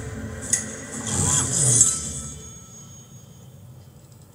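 Dramatic soundtrack of the animated series playing back: a sharp click about half a second in, then a swelling whoosh with a falling low tone that peaks just before two seconds and dies away, over music.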